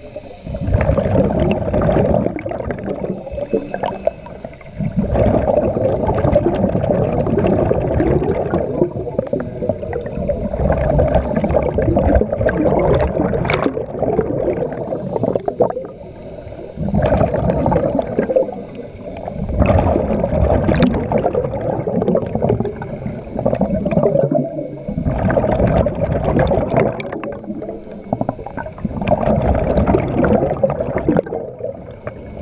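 Scuba diver's exhaled breath bubbling out of a regulator underwater, in long gurgling bursts of a few seconds with short pauses between, about every four to five seconds. It is heard muffled through a camera's underwater housing.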